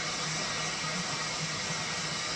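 Hooded salon-style hair dryer running with a steady, even hiss of blowing air and a faint high whine held at one pitch.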